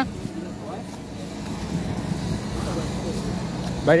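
Steady street traffic noise from passing cars.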